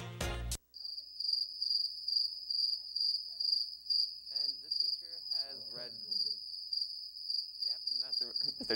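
Music cuts off just after the start; then crickets chirp steadily, a high pulsing trill.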